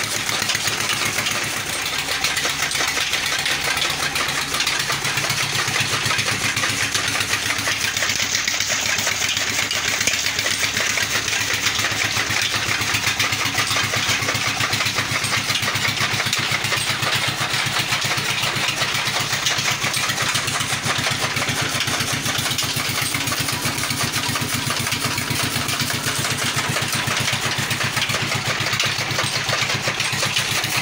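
16 hp diesel engine running steadily under load, driving a fodder cutter through a belt and line shaft, with the cutter's blades chopping green fodder in a fast, even rhythm.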